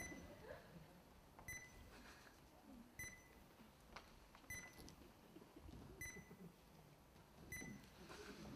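Faint, short electronic beep in a high tone, repeating at a steady pace of about one every second and a half.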